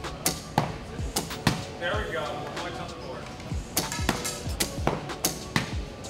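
Background music with a sharp, clicking percussive beat, about three hits a second, and faint voices under it.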